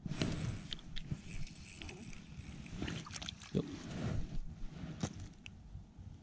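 Close-up rustling and handling noise with scattered small clicks and knocks, from a spinning reel and short ice rod being worked in the hands.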